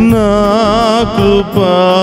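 A Telugu Christian devotional song being sung: one long, wavering melismatic phrase held with vibrato over a steady accompaniment, with a short break about one and a half seconds in before the next phrase begins.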